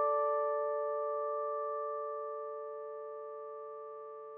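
A single guitar chord of outro music ringing out, slowly fading.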